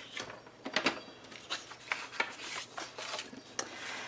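Sheets of cardstock being handled and slid across a stone countertop: a series of short, irregular paper rustles, scrapes and light taps.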